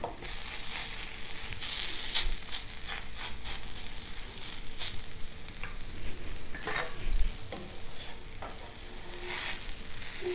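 Dosa sizzling steadily on a hot nonstick tawa, with scattered short scrapes and clinks of a steel spoon against a steel bowl as vegetable masala is spooned onto it.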